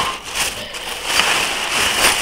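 Plastic carrier bag crinkling and rustling as a hand rummages inside it.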